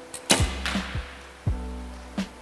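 Recurve bow shot: a sharp snap of the string as the arrow is released about a third of a second in, followed by a short hiss of noise that fades out. Background music with a steady beat plays throughout.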